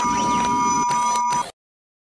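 Electronic logo sting: a steady buzzing tone of two close pitches over a noisy hum, which cuts off abruptly after about a second and a half.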